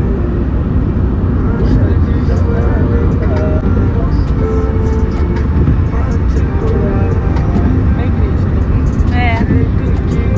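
Loud, steady low rumble of a car driving, heard from inside the cabin.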